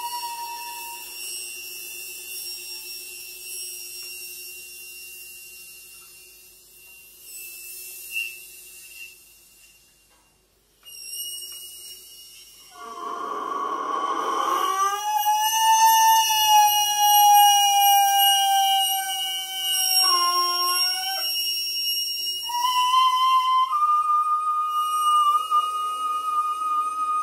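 Free improvised music for violin, bassoon and percussion: thin, high, whistle-like sustained tones that thin out to a near pause about ten seconds in. Then comes a short noisy, rasping stretch, a long tone sliding slowly downward, and near the end a tone rising into a steady higher pitch.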